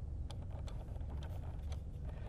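Low steady rumble of a car cabin, with a few faint clicks as a laptop is handled and turned over.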